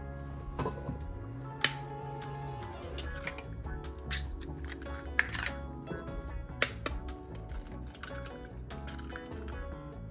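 Background music over eggs being cracked one after another against a stainless steel mixing bowl, heard as a few sharp taps.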